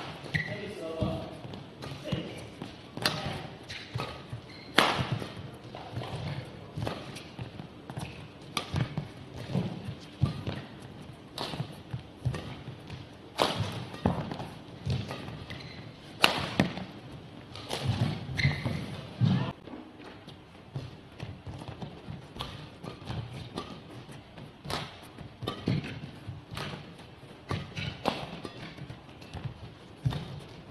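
A fast badminton rally: racket strings strike the shuttlecock in sharp cracks every second or two, and the players' footfalls thud on the court mat between them.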